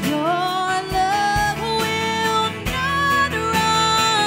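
Live worship music: a woman singing long held notes into a microphone over strummed acoustic guitar, her voice sliding up into the first note just after the start.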